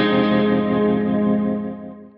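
Intro music: a distorted electric guitar chord struck once and left ringing, fading out near the end.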